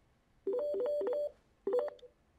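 ShoreTel desk phone ringing for an incoming call: a warbling ring of quickly alternating tones about a second long, starting about half a second in. A second ring starts near the end and is cut short as the call is answered on speakerphone.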